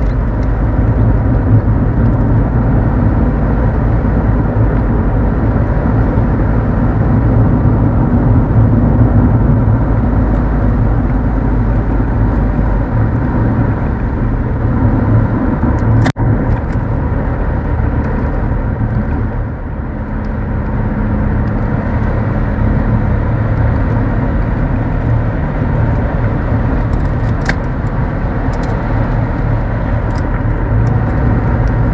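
Mercedes-Benz W124-series car driving on an open road: steady engine and tyre-on-road rumble. A single sharp click with a brief drop in sound comes about halfway through, and the engine note dips and picks up again a few seconds later.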